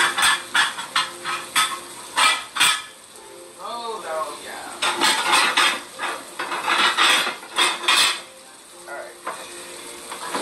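Catfish fillets sizzling in hot seasoned oil in a cast-iron skillet, with repeated sharp clinks and clatter of dishes and utensils as a plate is got ready.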